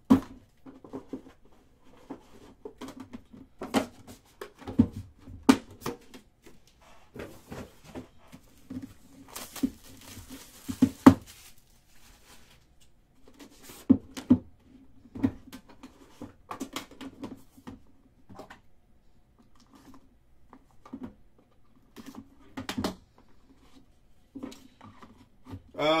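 Handling of a Panini Immaculate trading-card box: scattered knocks and clicks as the lid is lifted off and the inner card box is taken out, with a rustle of about a second around ten seconds in.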